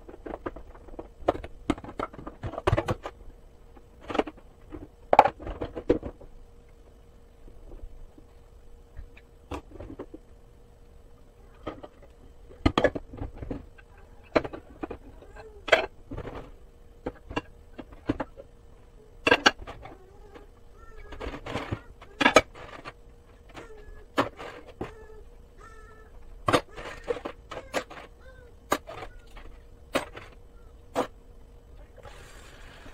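Dishes being hand-washed in a soapy sink: irregular clinks and knocks of plates and utensils against each other and the sink, some with a short ring, over a steady faint hum.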